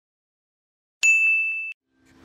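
A single bright ding sound effect on the animated logo intro, starting sharply about a second in, ringing on one clear high pitch and cut off abruptly after about two-thirds of a second.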